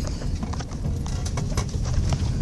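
A quick run of sharp, unevenly spaced clicks or taps, about half a dozen in two seconds, over the low steady rumble of a moving car's cabin.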